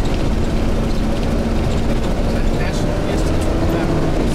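Tour bus driving on a gravel road, heard from inside the cabin: a steady engine drone over the low rumble of tyres on gravel, the engine note rising slightly near the end.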